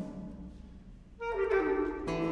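Clarinet improvising: after a brief lull in which a low note fades, the clarinet comes in loudly a little past the middle with a bright held note that drops to a lower one.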